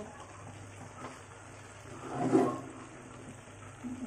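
Pork and carrots cooking in a wok, a low steady hiss, with one brief louder sound about two seconds in.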